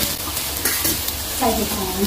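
Sea cucumber, shiitake mushrooms, garlic and ginger sizzling in hot oil in a nonstick wok while a spatula stirs them, with a couple of short spatula scrapes about two-thirds of a second in.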